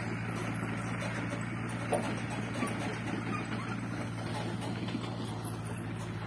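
An engine running steadily, a low even hum with no rise or fall in pitch.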